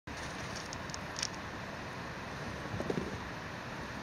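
Steady rushing outdoor background noise, with a few faint high ticks about a second in and a brief low sound near three seconds.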